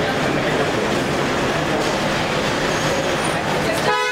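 Steady, echoing din of an underground parking garage: people and vehicles moving about, with a short car horn toot right at the end.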